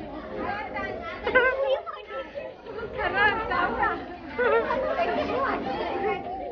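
People's voices talking and chattering, with no other sound standing out.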